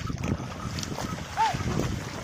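Bullocks' legs and a cart's wheels churning and splashing through flooded paddy-field mud, an uneven sloshing. About two-thirds of the way in, a short rising-and-falling squeal-like tone sounds once; it recurs every second and a half or so.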